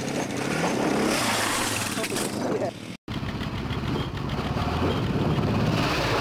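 Yamaha Raptor quad's single-cylinder four-stroke engine revving hard on the approach to a jump. The sound cuts out for an instant about three seconds in, then the engine runs on, louder, as the quad passes close overhead.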